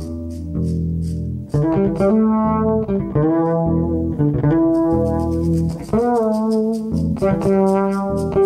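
Live jazz-fusion band music: a held low chord under steady hi-hat ticks, then, about one and a half seconds in, a lead guitar line of gliding, bending notes over electric bass and drums.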